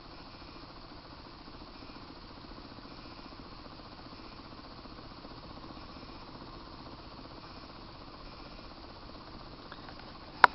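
Small electrostatic corona motor spinning a neodymium ring magnet, giving a faint, steady hiss with no change in speed.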